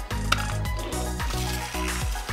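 Gears of a Quickshadow Flip Racers toy car's spring-loaded pull-back motor ratcheting as the car is drawn back along the table, under background music.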